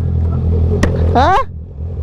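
Honda CB650R inline-four motorcycle engine idling with a steady low hum. A single click comes a little under a second in, and a brief voice sound follows shortly after a second in.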